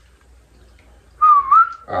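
A person whistling one short note, a little past halfway through, that dips and then rises again in pitch; it is the loudest sound here, after a second of faint room noise.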